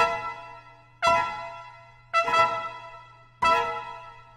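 Trumpet and grand piano playing four loud accented chords together, about a second apart, each struck sharply and then dying away in the room's reverberation.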